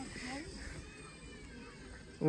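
Faint, distant voices of people talking, over a low outdoor background.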